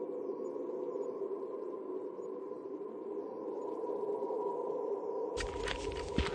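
Ambient sound-design drone: a steady low hum with a fainter higher tone held above it and faint wavering high whistles drifting over it. Near the end a run of dry, irregular crackling clicks cuts in suddenly.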